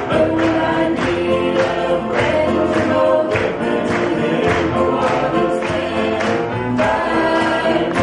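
Three women singing a gospel song in close harmony into hand-held microphones, over accompaniment with a steady beat.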